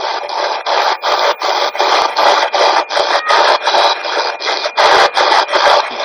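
SB-11 spirit box sweeping through radio stations: a fast, even chop of static bursts, about four a second, with a faint steady high tone underneath.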